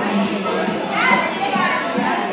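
Overlapping voices of a group of women chattering at once, with music playing underneath.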